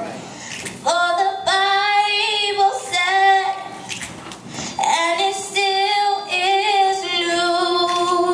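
Youth vocal ensemble singing a cappella, mostly female voices: two long sung phrases of held, wavering notes with a short break between them.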